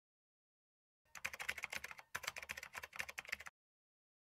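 Rapid computer-keyboard typing clicks, a typing sound effect. The typing starts about a second in, breaks briefly near the middle, then runs on and stops suddenly.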